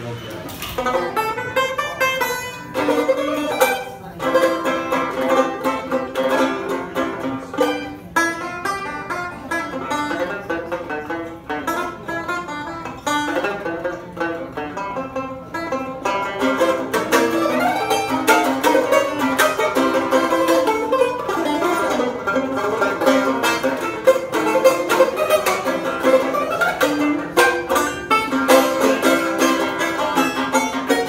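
A banjo played solo: a continuous run of picked notes that grows a little louder and busier about halfway through.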